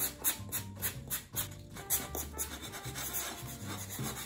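Sanding blocks rubbing a dried coat of garden lime off terracotta clay pots, in quick scratchy strokes several times a second.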